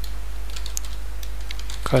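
A few light computer-keyboard keystrokes typing a short word, over a steady low electrical hum.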